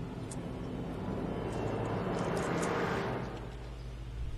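A soft rushing noise that swells over about three seconds and then fades, with a few faint clicks and low steady tones underneath.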